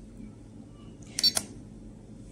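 A single short, sharp keypress sound from the RadioLink RC6GS V3 transmitter's menu buttons about a second in, as the setting cursor steps on to the next value.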